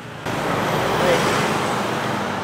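A road vehicle passing close by on the highway: a loud rush of tyre and engine noise that comes in suddenly a moment in, peaks around the middle and eases off slowly.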